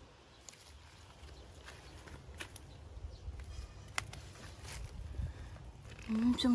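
Faint rustling of hands among chickweed (Stellaria media) plants as the stems are gathered, with a few scattered soft clicks.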